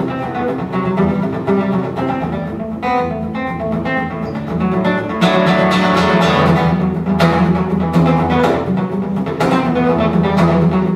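Solo steel-string cutaway acoustic guitar played fingerstyle in an instrumental passage, with a steady run of picked notes over low bass strings. About five seconds in the playing gets louder, with harder, sharper attacks.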